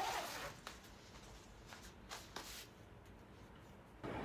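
Faint handling of a vest: a short raspy zip and rustle of the fabric right at the start, then a few soft ticks and rustles as it is adjusted.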